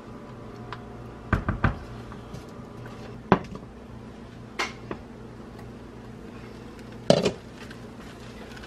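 Scattered knocks and clinks of cookware as a pan and its glass lid are handled on a glass-top electric stove: two quick knocks a little over a second in, a sharp clink about three seconds in, and a cluster of knocks near the end as the lid comes off and is set down. A low steady hum runs underneath.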